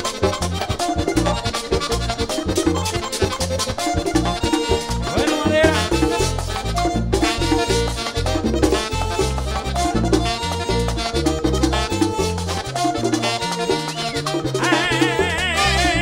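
Merengue típico band playing an instrumental passage: accordion over a stepping bass line and a quick, steady dance beat. A wavering high melodic line comes in near the end.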